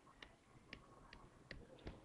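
Faint clicks of a stylus pen tapping on a tablet screen while handwriting, about five in two seconds, over near silence.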